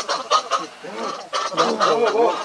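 Macaques calling: a rapid series of short calls, each rising and falling in pitch.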